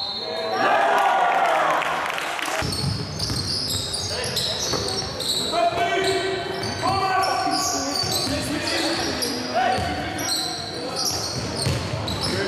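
Basketball game in an echoing sports hall: the ball bouncing on the wooden court in short knocks, with players and spectators shouting.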